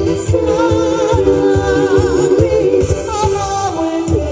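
A woman singing a Korean trot song live into a microphone over a backing track with a steady beat, her voice held in long notes with a wavering vibrato.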